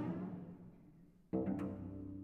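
Solo cello: a low note rings and fades away, then about 1.3 s in a second low note starts with a sudden hard attack and rings on, slowly dying away.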